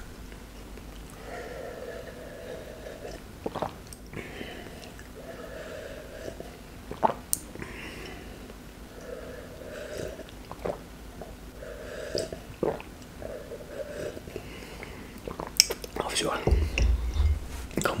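A person drinking compote from a glass mug in a series of gulps and swallows, each about a second long with short pauses between, and a few sharp clicks in between.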